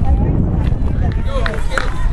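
Steady low wind rumble on the microphone with distant voices calling out from players and spectators, and a single sharp crack near the end.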